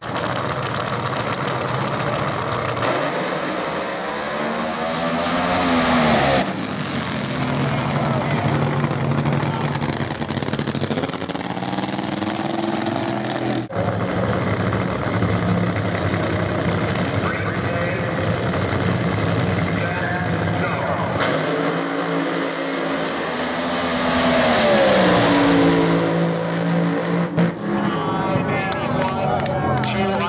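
Nitro-burning funny car engine: a loud revving roar that rises and cuts off sharply about six seconds in, steady engine running through the middle, and a loud rising full-throttle run lasting about five seconds near the end.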